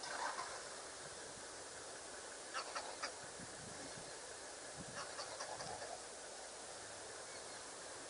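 Two short bursts of quick, bird-like animal calls, about two and a half and five seconds in, over a steady background hiss.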